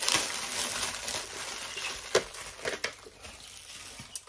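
Thin clear plastic packaging bag crinkling as it is torn open and pulled off a stack of plastic snack containers, loudest at first and then fading, with a few sharp clicks in the middle.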